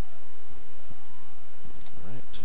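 Steady loud background noise with tones that sweep slowly up and down, and a short sharp click near the end.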